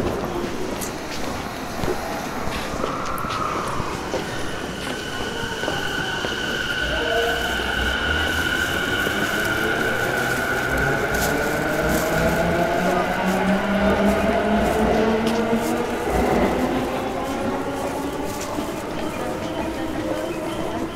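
Motor car of a JR East E233-series electric train under way: the traction motors and inverter whine in several tones that slowly climb in pitch as the train accelerates, over a steady running rumble.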